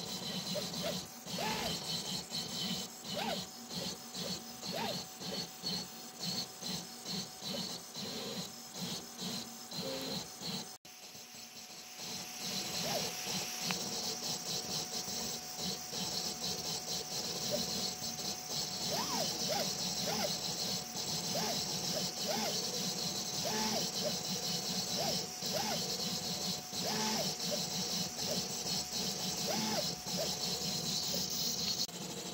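3D printer printing: the PAX 5-axis printhead's stepper motors whine in short rising-and-falling tones as the head moves, over a steady fan hum and hiss. The sound drops out briefly about eleven seconds in, then continues with a louder, steadier hiss.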